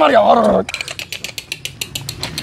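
A man's pained cry, falling in pitch, then a rapid, even run of mechanical clicks, about ten a second.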